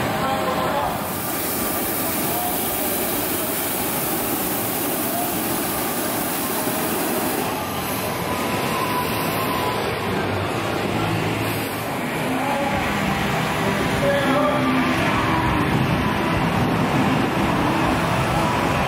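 Hot-air balloon propane burners firing with a steady rushing roar, loudest for the first several seconds and again briefly later, over the chatter of a crowd.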